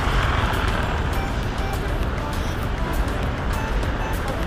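City street traffic: a car passing close in the first second, over a steady low rumble of road noise.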